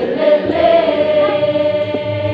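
A group of young women singing together in a choir, holding one long note through most of the stretch.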